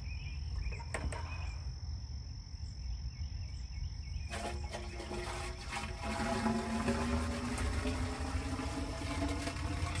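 Water poured from a bucket into the top of a vertical PVC pipe riser of a gravity-fed poultry-nipple waterer. From about four seconds in, the water inside the pipe gives a hollow, steady pitched ring as the riser starts to fill up, over a steady chirring of insects.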